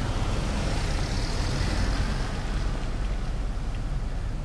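Road traffic heard from inside a car: a steady low rumble and tyre noise from vehicles passing in the next lane.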